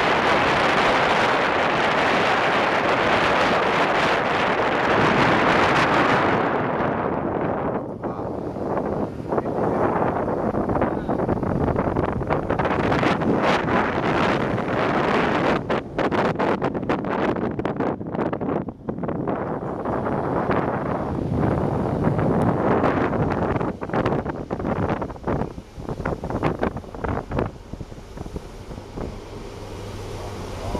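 Wind rushing over the microphone of a camera held at the open window of a moving car. It is a dense, steady rush at first, then from about six seconds in it turns choppy, buffeting and dropping out in quick gusts.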